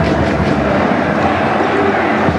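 Stadium crowd noise during live play: a steady roar of many voices.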